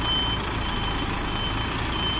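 Reversing alarm on a DAF articulated lorry beeping steadily, about three beeps every two seconds, over the diesel engine ticking over as the truck and trailer back up slowly.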